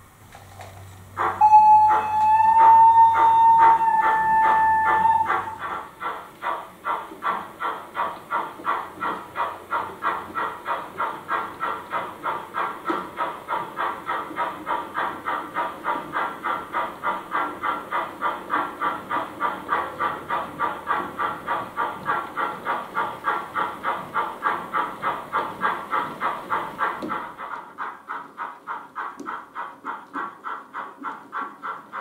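Model steam locomotive sound: a whistle blows about a second in and is held for about four seconds, then steady steam exhaust chuffs at about three a second as the H0 tank engine pulls its goods wagons.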